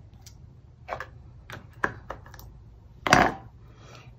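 A few light clicks and taps of a clear acrylic stamp block being pressed onto paper and handled on a wooden tabletop, with one louder knock about three seconds in.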